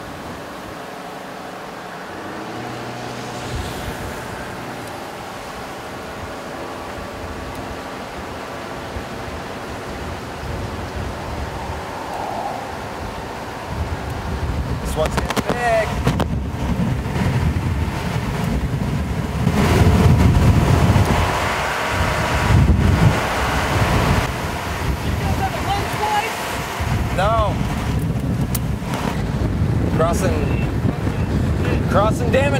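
Wind from a nearby tornado buffeting the microphone, with the low rumble of a vehicle on the move. It grows louder and gustier about halfway through, with heavy low rumbling gusts.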